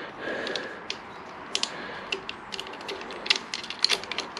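Small metal parts clicking and tapping as a spacer and bolt are worked by hand into a motorcycle clutch lever clamp on the handlebar: scattered, irregular sharp ticks.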